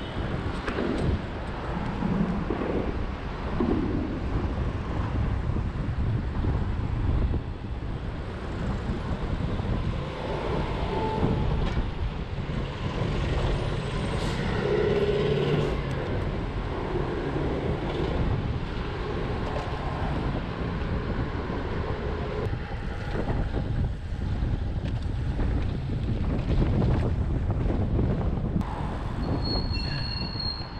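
City road traffic heard from a bicycle riding among cars and buses: engines running and vehicles passing, with steady wind noise on a handlebar-mounted action camera's microphone. A short high-pitched squeal near the end.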